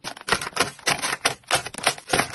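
Rapid run of light clicks and taps, about five or six a second, from small items and paper being handled and set down in a metal drawer with plastic divider trays.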